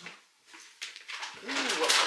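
Rustling and handling noise of an armful of laundry pressed against the microphone, growing louder in the second half, with a short low voice sound about halfway through.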